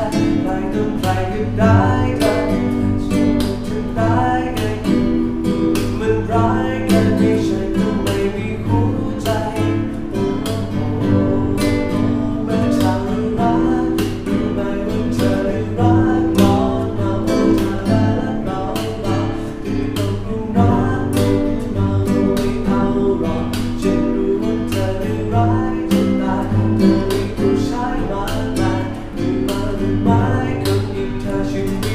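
Nylon-string classical guitar played fingerstyle: a plucked melody over repeated bass notes, played solo without pause.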